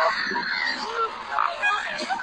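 Canada goose giving a few short honks while being hand-fed, with a person's voice mixed in.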